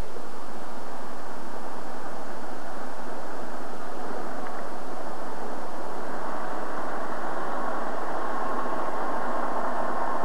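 Police patrol car on the move: steady engine and road noise without a break, with a faint whine coming in about halfway through.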